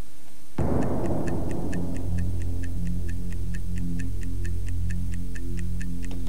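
Clock-like ticking at about four ticks a second over a low, sustained synthesizer drone, the soundtrack of a television countdown ident. It opens just over half a second in with a sudden noisy hit that fades away.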